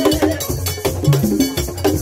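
Live Haitian Vodou ceremonial drumming, with hand drums and a struck bell keeping a steady, repeating rhythm for the dancers.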